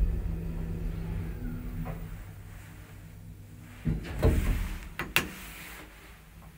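Asea Graham traction elevator running with a steady low hum that fades away as the car slows and stops. Then come a short rumble about four seconds in and two sharp clicks a second later as the doors open.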